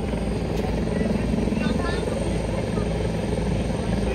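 A turboprop aircraft engine running steadily, heard as a continuous low drone with several held low hums.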